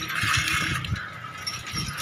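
Wind rumbling on a handheld phone's microphone during a bicycle ride, with a hiss of street noise that fades about halfway through.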